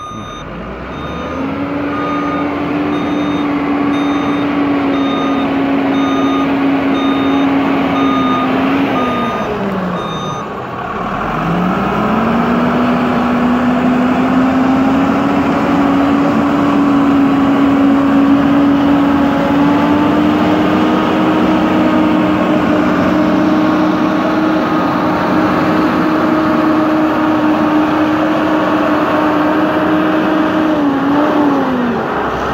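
A Shantui motor grader's diesel engine runs with a steady hum while its reversing alarm beeps a little more than once a second. The beeping stops about ten seconds in. At the same point the engine pitch dips and climbs back up, and it then runs steadily.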